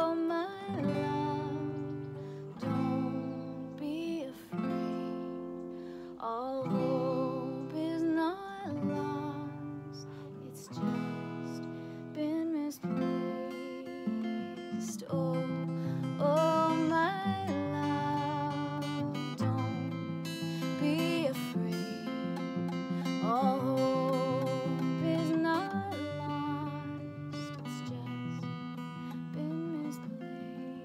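A woman singing a slow breakdown chorus over an acoustic guitar. Each chord is strummed once and left to ring, with a new chord every second or two.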